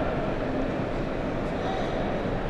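Steady background din of a large exhibition hall, an even wash of noise with no distinct events.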